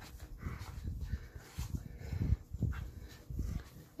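A small dog making low, grumbling play noises in short, irregular bursts while it wrestles with a man's hand on a bed.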